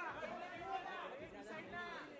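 Indistinct chatter: several voices talking over one another, no clear words.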